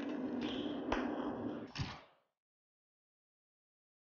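TIG welding torch arc on thin sheet metal: a steady hissing buzz with a low hum, a sharp crack about a second in and another just before it cuts off, about two seconds in.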